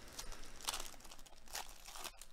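The opened foil wrapper of a 2021 Donruss Baseball trading-card pack crinkling in a few short bursts as the cards are slid out and the empty wrapper is handled.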